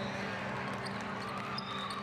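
Echoing din of a large indoor sports hall with volleyball being played: many voices blended together, balls bouncing, and a short high squeak of sneakers on the court floor near the end.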